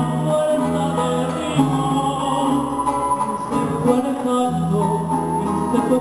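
Instrumental passage from a small Venezuelan folk ensemble: strummed cuatros and a flute melody over held low bass notes, with no singing.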